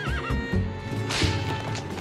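A horse whinnying briefly with a short wavering call right at the start, then a short rush of noise about a second in, over background music.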